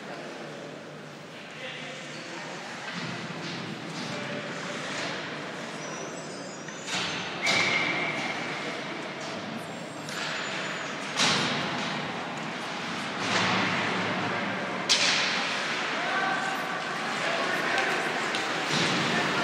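Ice hockey rink ambience: a steady hubbub of spectators' voices, broken by several sharp cracks of sticks and puck against the ice and boards, the loudest about fifteen seconds in.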